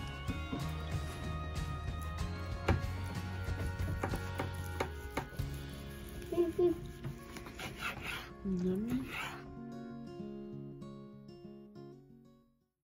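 Kitchen knife slicing through roast pork and knocking on a wooden cutting board in scattered sharp clicks, under background music that thins out near the end.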